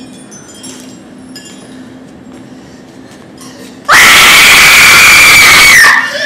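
A woman's high-pitched stage scream, sudden and very loud, held for about two seconds and falling away at the end. Before it, faint high tinkling chimes.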